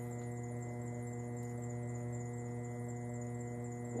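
Electric potter's wheel running, a steady even motor hum with several overtones, while the clay spins under the potter's dry hands.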